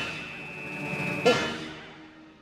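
An edited-in musical sound effect. A sudden percussive hit rings on as a held high tone, a second hit comes about a second and a half in, and the sound then slowly fades away.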